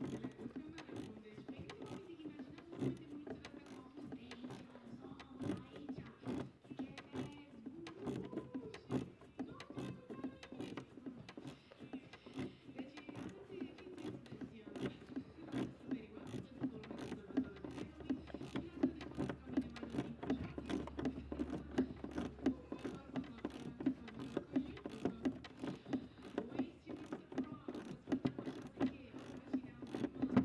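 Hand tools clicking and rattling as they work loose the mounting of a Ford Kuga's exhaust differential pressure sensor, a dense run of small clicks throughout.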